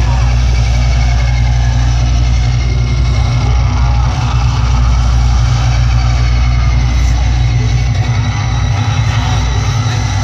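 Loud, steady low droning from a concert PA, the kind of rumbling intro played in the dark before a metal band takes the stage. Crowd voices run under it.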